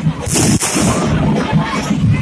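Dense, continuous procession drumming with a loud sharp crash about a quarter second in, one of a series of such crashes coming every two seconds or so.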